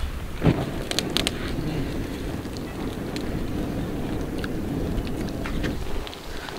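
Wood fire burning in a stone hearth: a steady rushing noise of flames with scattered crackles and pops. The noise starts with a pop about half a second in and stops abruptly just before the end.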